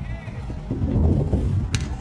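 Slowed-down slow-motion replay audio: deep, drawn-out voices and wind rumble on the microphone, with one sharp click near the end.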